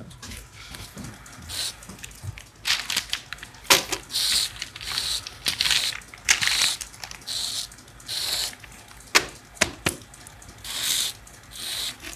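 Nylon zip ties being pulled tight around a bundle of plastic rods: a series of short ratcheting zips, with a few sharp plastic clicks about nine seconds in.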